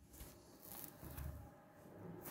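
Faint low rumble with a light steady hum from an old ZREMB Osiedlowy lift, with a few brief rustles or clicks on top.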